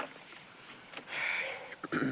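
Mostly quiet gap between speech, with a soft breathy noise about a second in and a person's voice starting again near the end.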